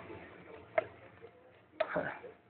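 Handling noise from a camera being moved: two sharp clicks or knocks about a second apart, the second louder.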